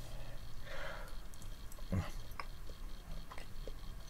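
A person biting into and chewing a piece of soft, creamy gorgonzola blue cheese, with small scattered mouth clicks and a short breath about a second in.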